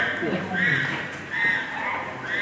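Chimpanzee calling: a run of high calls, about three in two seconds, each rising and falling in pitch.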